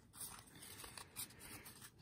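Faint rustle and a few soft taps of a small stack of baseball cards being handled and squared up in the hands.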